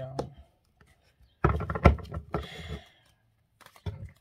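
Tarot cards being handled on a table: a cluster of sharp knocks and clicks about a second and a half in, then a short rustle of cards sliding against each other, with a few faint clicks near the end.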